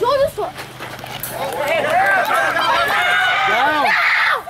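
Spectators at a youth baseball game shouting and yelling, many voices at once. The shouting swells about a second and a half in as a runner races home on a wild pitch, and stays loud to the end.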